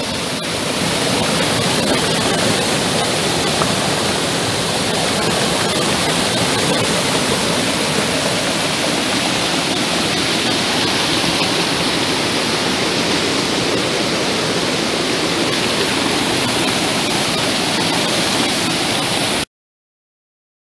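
Fast spring-fed stream rushing and splashing over rocks as white water, a loud, steady rush that cuts off suddenly near the end.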